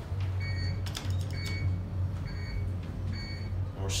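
Fujitec traction elevator cab travelling between floors with a steady low hum, a short high beep repeating about once a second, and a few clicks about a second in.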